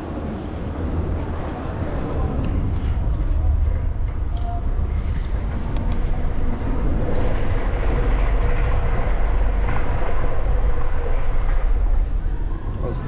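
Rumbling rush of a person riding down an enclosed tube slide, clothes rubbing along the tube wall. It builds over the first several seconds as the ride picks up speed, then holds.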